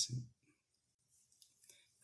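The last syllable of a man's word, then near silence broken by a few faint, short clicks about one and a half seconds in.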